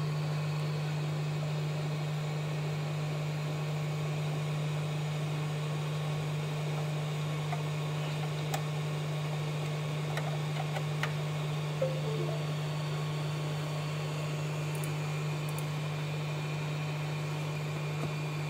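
A steady low hum over a faint hiss, with a few small clicks and taps from handling the chip adapter and programmer about halfway through.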